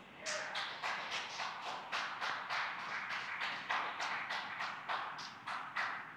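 Rapid, irregular run of short hissing puffs, three or four a second, on a Falcon 9's onboard audio just after first and second stage separation, fading near the end.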